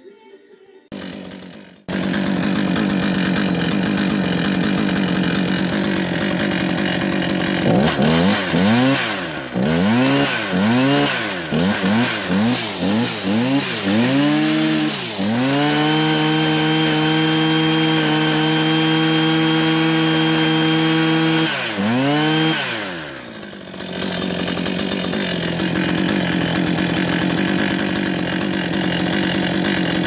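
Husqvarna 545 RX brushcutter's two-stroke engine on its first test run after a rebuild with a replacement crankcase, cylinder and piston. It starts about two seconds in and idles, then is revved in a string of quick blips. It is held at high revs for about six seconds, then drops back to a steady idle.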